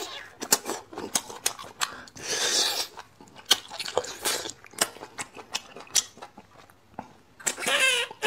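Close-miked sucking and slurping of marrow out of a braised marrow bone, with many wet lip smacks and clicks and one longer slurp about two seconds in.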